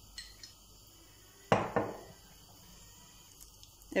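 Two sharp knocks of kitchenware being handled, a quarter second apart about one and a half seconds in, after a couple of faint clicks; quiet in between.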